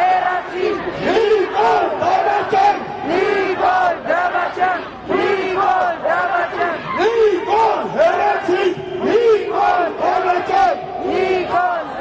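A rally crowd shouting slogans, voices raised and high-pitched, continuing unbroken.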